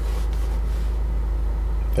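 Steady low rumble inside a car's cabin, even throughout, with no distinct knocks or clicks.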